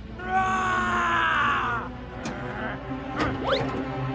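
A cartoon character's long, wordless groan over background music, followed about three seconds in by a couple of quick rising whistle-like sound effects.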